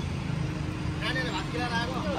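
Road traffic running steadily, with a low engine rumble from passing vehicles. A voice speaks faintly about a second in.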